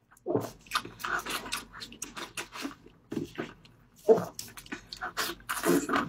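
Close-miked biting and chewing of roast pork belly: a run of crisp crunches and wet smacking mouth sounds, loudest at a bite about four seconds in.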